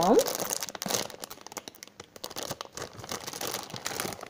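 Thin plastic packaging bag crinkling and crackling irregularly as hands handle it and pull a foam squishy toy out of it.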